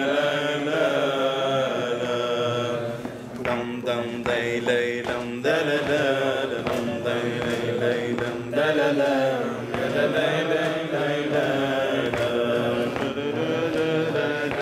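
Unaccompanied male singing of a Syrian-Jewish piyyut in maqam Rast: long held notes with wavering melismatic ornaments, easing off briefly about three to five seconds in before resuming.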